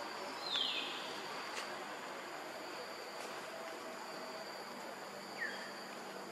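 Insects keep up a steady high-pitched drone over forest ambience. Two short chirps that fall in pitch cut across it: a louder one about half a second in and a fainter one near the end.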